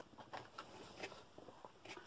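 Faint rustles and light taps of card and paper being handled in an opened cardboard box, a few small separate sounds.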